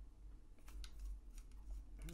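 A few faint metallic clicks and light scrapes as a precision bit driver turns a small T8 Torx screw out of a folding knife's pocket clip.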